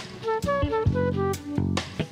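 Live band music between sung lines: a quick melodic run of short, stepping notes over a steady bass, with a few sharp drum hits.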